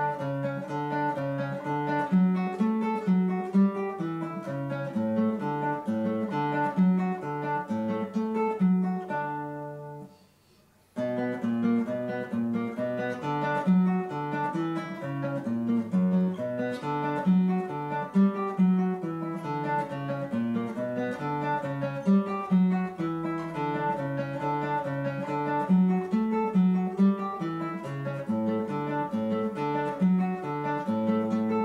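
Classical nylon-string guitar fingerpicking a steady run of plucked notes with a repeating bass line. About ten seconds in, the playing stops and the last notes ring away. It starts again about a second later and runs on.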